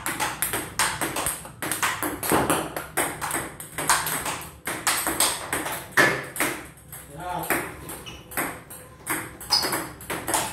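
Table tennis ball being hit back and forth in forehand practice: quick, sharp clicks of the ball off the rubber paddle and the table top, about three a second.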